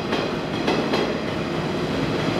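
Electric limited-express train pulling out and rolling past the platform: a steady rumble from the cars, with wheels clicking over rail joints.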